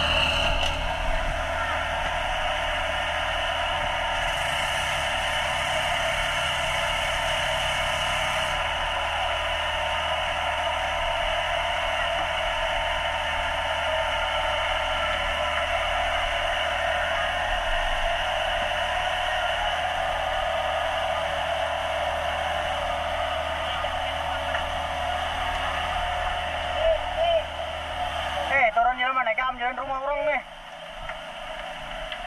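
Fire hose nozzle spraying water, a loud steady hiss. Near the end the hiss breaks off and a wavering sound takes over.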